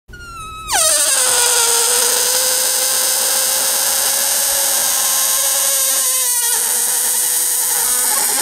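Air escaping through the stretched neck of an inflated rubber balloon, the rubber vibrating rapidly in a loud squeal. It starts high, drops sharply in pitch within the first second, then holds one steady tone, wavering briefly about six seconds in.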